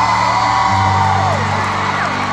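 Live band's sustained low chords in an arena, shifting pitch twice, under long high-pitched screams from fans that glide down and break off.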